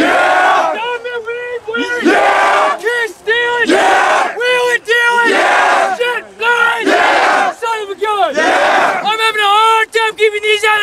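A football team in a huddle chanting and shouting together: a rhythmic group chant broken by loud collective yells about every second and a half.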